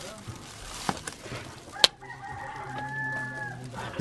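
A rooster crows once, one long held call of about a second and a half starting about halfway through. Just before it comes a single sharp tap.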